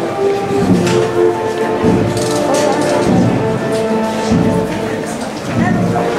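A band playing slow processional music, wind instruments holding long melodic notes, with voices of the crowd underneath.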